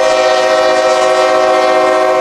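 Diesel freight locomotive's air horn blowing one long, steady blast, several tones sounding together as a chord, as the train approaches a road grade crossing.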